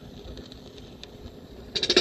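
Faint hiss and crackle from a vinyl record spinning on a portable record player, then near the end a brief loud burst of clicks as the stylus is set down on the record.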